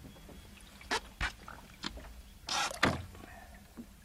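A few short knocks against an aluminum boat hull, then a short splash about two and a half seconds in as a large walleye is released over the side.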